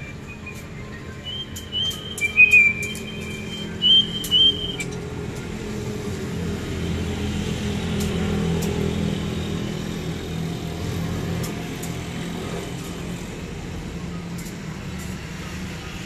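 Short, high chirping whistles with soft slaps of bread dough between the palms for the first five seconds, then a steady low hum.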